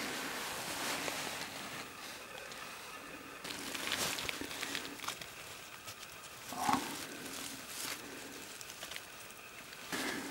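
Rustling of leaf litter on the forest floor as leaves are moved aside by hand, with a brief voice-like sound about two-thirds of the way through.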